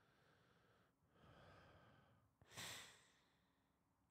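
A man's breathing close to a microphone: a faint breath about a second in, then a louder, short breath about two and a half seconds in, with near silence around them.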